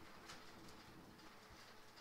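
Near silence: faint room tone with a few soft clicks of mahjong tiles being arranged by hand.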